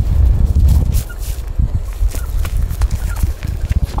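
A camel gnawing on a tree trunk, stripping the wood and bark in a run of short, irregular crunching and cracking clicks. A low rumble sits under the first second.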